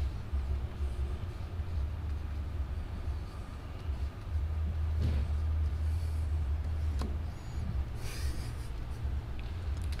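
Faint strokes and taps of a dry-erase marker writing on a whiteboard, over a low steady rumble.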